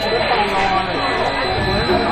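People talking, with music in the background.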